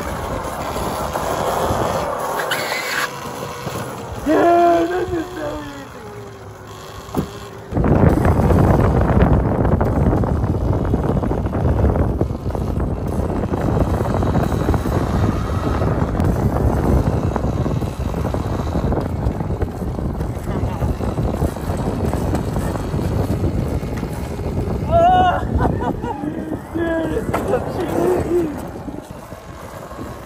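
Kayo EA110 electric quad being ridden in wheelies on concrete: its motor and tyres running, with a loud steady rush of noise that starts suddenly about eight seconds in.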